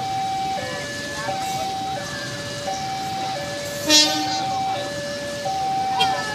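Railway level-crossing warning alarm sounding a steady alternating two-note ding-dong, about one note every 0.7 s, warning that a train is approaching. A short, loud call cuts in about four seconds in.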